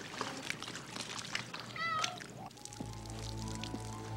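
A cat meows once, briefly and with a wavering pitch, about two seconds in; a low, sustained music chord sets in shortly after.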